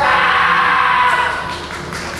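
Kendo fencer's kiai: a loud, drawn-out yell from a competitor facing an opponent, held for about a second and then tailing off.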